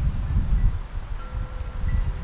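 Low rumble of wind on the microphone, with faint steady ringing tones joining about a second in.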